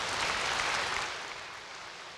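Congregation applauding, swelling to a peak about half a second in and then fading away.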